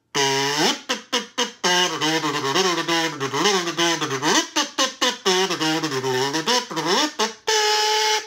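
Performance Edition kazoo with a built-in pickup, played acoustically and unamplified: a buzzy hummed tune in short phrases with sliding pitch, ending on a held note.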